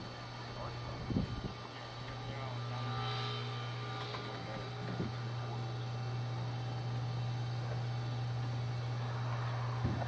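Hydraulic swing-gate operator's pump motor running with a steady low hum while a pair of heavy wooden gates swings closed, with a few light knocks. The hum cuts off suddenly at the end as the gates finish closing.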